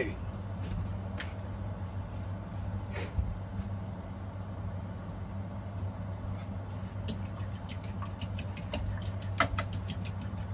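Eggs being cracked into a wooden bowl: a few sharp taps, then a quicker run of light clicks in the last three seconds, over a steady low hum.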